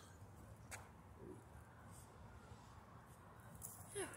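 Near silence: faint low outdoor background rumble, with a soft click about three quarters of a second in.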